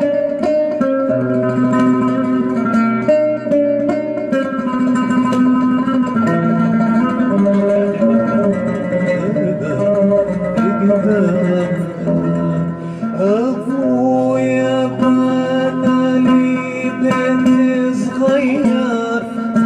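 Oud playing a Palestinian folk tune as a steady run of plucked notes. A man's singing voice joins in over it in the last few seconds.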